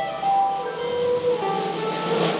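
Live rock band music with held notes.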